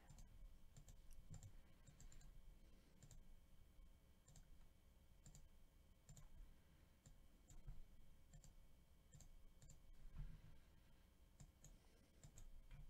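Faint, irregular clicks of a computer mouse and keyboard, scattered over near-silent room hum.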